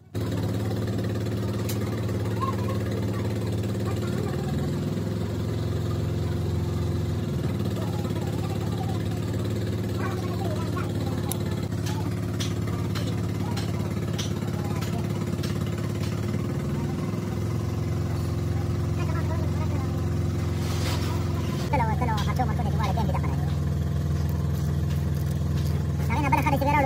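An engine running steadily at idle, with a constant low drone. A run of sharp clicks comes around the middle, and the engine's tone shifts near the end.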